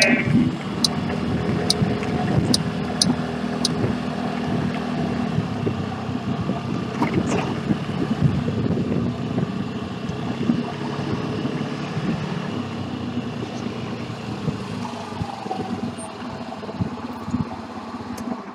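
Small motorbike engine running steadily while riding at low speed, heard from the bike's onboard camera, with road and wind noise and a few light ticks in the first few seconds.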